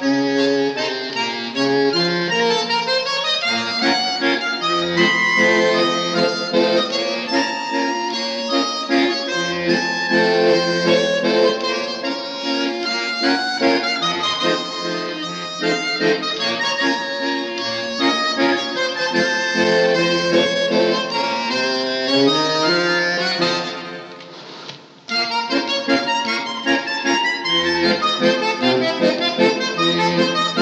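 Solo bandoneon playing a tango vals, with full chords under a moving melody. About 24 seconds in it thins to a soft held sound for a moment, then comes back in full.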